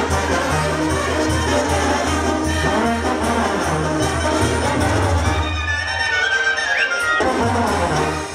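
Brass band music, trumpets and trombones playing over a steady low bass.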